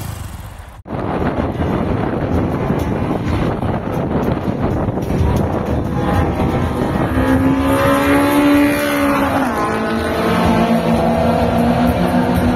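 Drag-racing cars accelerating down a drag strip, heard from the trackside: a loud, dense engine noise that begins abruptly about a second in. From about six and a half seconds a pitched engine note stands out, holds for a few seconds and drops away near nine and a half seconds.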